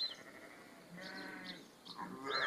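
A sheep bleating once, a steady call of about half a second starting about a second in.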